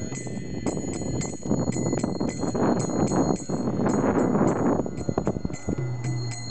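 Harinam street kirtan: kartals (small brass hand cymbals) struck in a steady beat of about three strikes a second, their ringing held over, above the rest of the kirtan music.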